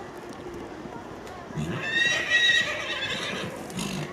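A horse whinnying: one loud, high call lasting almost two seconds, starting about one and a half seconds in.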